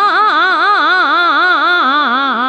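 Hindustani classical vocal taan in Raag Bhairav: a voice running rapidly up and down the notes without a break, its pitch rippling about five times a second, over a steady drone.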